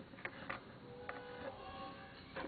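A go stone being set down and adjusted on a go board: two or three faint clicks in the first half second. A faint steady tone follows behind.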